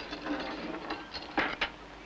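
Dishes and glassware clinking and rattling as a serving platter is set down on a table, with two sharper knocks a little past halfway, over the hiss of an old film soundtrack.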